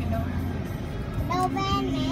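A child singing over music, the voice holding notes in the second half, with a steady hum of car engine and street traffic underneath.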